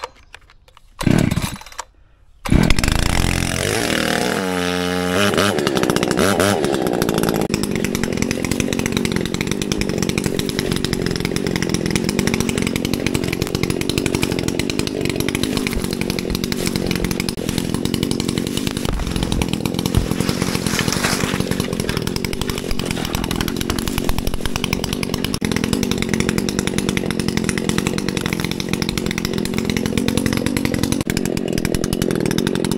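Echo two-stroke gas chainsaw being pull-started: a couple of short pulls on the starter cord, then the engine catches about two seconds in, revs up and down for a few seconds, and settles into a steady run.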